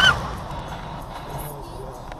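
A woman's brief high cry at the very start, fading into steady road noise inside a moving car.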